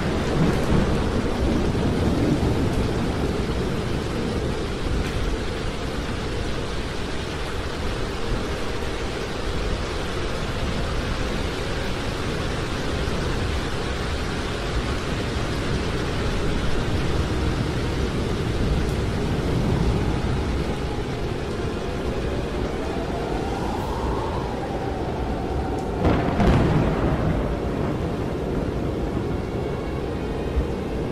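Steady heavy rain with rumbling thunder, with a louder crash near the end. Shortly before the crash, a tone rises and falls.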